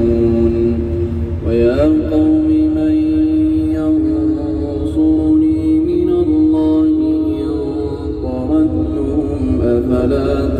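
A male reciter chanting the Quran in a melodic tajweed style, drawing out long held notes that shift slowly in pitch. He is playing in a moving car, with a steady low road and engine rumble underneath.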